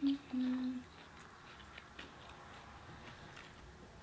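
A person humming with mouth closed while eating: two short hums, the second lower and a little longer, in the first second. Faint clicks of a fork on a plate follow.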